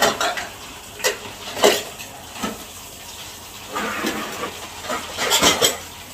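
Ceramic bowls and plates clinking against each other as they are washed by hand in a plastic tub of water, in scattered sharp clinks with a louder cluster near the end. A tap runs steadily into the tub underneath.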